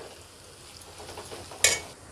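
Spiced tomato-onion masala sizzling faintly in a stainless-steel kadhai, then about a second and a half in a brief, sharp metallic clink as the steel lid is set on the pan.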